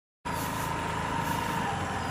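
Motor scooter engine running steadily as it rides along a paved road, with a thin steady whine; the sound cuts in abruptly just after the start.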